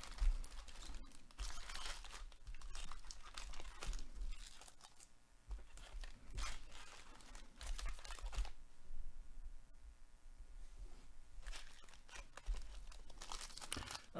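Foil wrappers of sealed trading-card packs crinkling and rustling as the packs are handled and shuffled, in irregular spurts with a brief lull about five seconds in.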